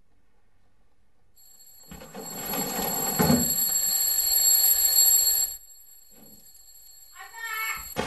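A bell ringing loudly for about three and a half seconds, starting about two seconds in and stopping suddenly. A thin, steady high tone begins just before it and holds on after it stops.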